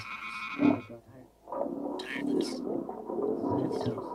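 Electroacoustic tape music made of processed, layered voice sounds. A loud swell just before a second in drops to a brief near-silent gap, then low murmuring voices return with hissing s-sounds.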